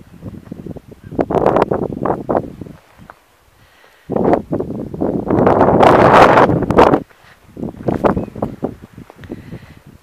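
Strong wind buffeting the camera microphone in gusts: a long burst of low rushing noise at the start, a second and loudest one about four seconds in, then lighter gusts.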